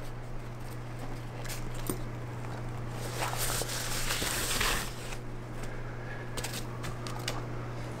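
A zippered hard case being opened by hand and binoculars lifted out of a white wrapping bag: soft rustling and crinkling handling sounds, loudest about three to five seconds in, over a low steady hum.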